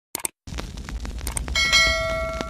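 Two quick clicks of a subscribe-button sound effect, then a bright bell ding about one and a half seconds in that rings on, over a steady crackling hiss.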